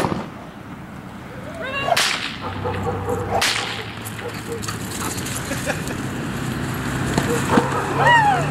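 Two sharp whip cracks, about two and three and a half seconds in, from the protection helper driving at a dog charging in for the long bite in IPO protection work. Short rising-and-falling calls come just before the first crack and again at the end, over a steady low hum.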